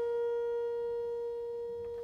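A steady sine-wave tone from a loudspeaker driven by a signal generator, held at one unchanging pitch at a low amplitude setting and easing slightly quieter.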